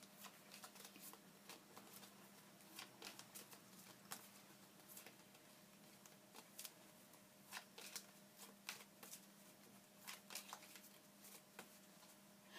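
Faint, irregular soft clicks and rustles of tarot cards being shuffled and handled, over a low steady hum.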